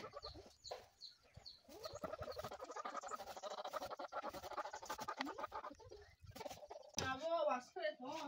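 Faint chickens clucking with small birds chirping, and a louder short call near the end.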